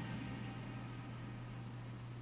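A steady low hum with faint hiss: quiet room tone.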